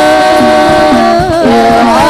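A women's hadroh ensemble singing an Islamic sholawat together over rebana frame drums, with long held notes that bend and turn and low drum strokes beating underneath.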